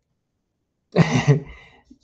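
A man clears his throat once, a short rough burst about a second in that trails off.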